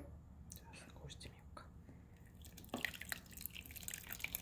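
Faint scattered clicks of a pot being handled. About three seconds in come irregular crackly splashes as curds and whey start to pour from a metal pot into cheesecloth, with the whey dripping through.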